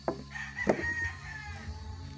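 A rooster crowing: one long high call that drops in pitch at the end. Two sharp loud sounds come just before and during it, the second the loudest.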